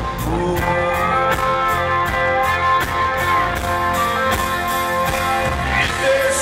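Live band playing an instrumental passage of a slow country-rock song: sustained electric guitar notes with some sliding lead lines over a steady drum and cymbal beat.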